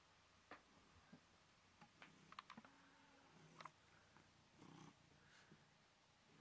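Very faint sounds of a pet cat close to the microphone, purring softly, with scattered light clicks; otherwise near silence.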